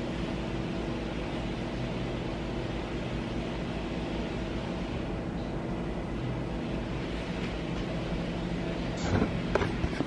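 A steady mechanical hum with a few low, unchanging tones. About nine seconds in come a few sharp knocks and clicks as the camera is handled and picked up.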